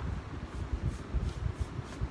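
Soft rubbing with irregular low bumps, a paintbrush working chalk paint over a wooden dresser.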